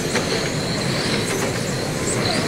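A pack of 1/10-scale electric RC race cars with 10.5-turn brushless motors running flat out on a carpet track. Their high motor and gear whine blends with tyre noise into a steady din, with a couple of short rising whines as cars accelerate.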